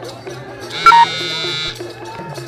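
A loud, buzzy tone lasts about a second. It starts sharply, loudest in its first instant, and then holds steady until it cuts off. Live folk music and voices carry on underneath.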